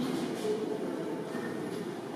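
Steady low room rumble with faint, indistinct voices of visitors in a vaulted hall.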